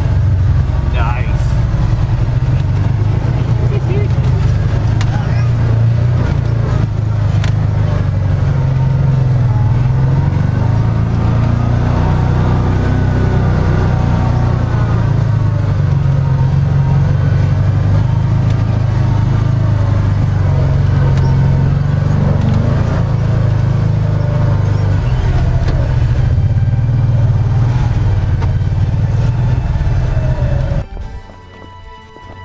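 UTV engine running under load as it crawls over slickrock, heard from inside the open cab: a steady low drone whose pitch rises and falls with the throttle.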